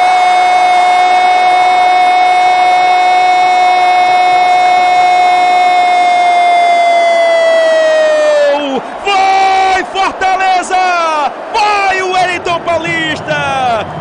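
A Brazilian football commentator's long drawn-out goal cry: one held note for about eight and a half seconds that drops in pitch at the end, then fast, excited shouted commentary.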